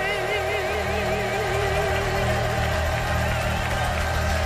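A woman's gospel singing voice holding one long note with a wide vibrato over live band accompaniment.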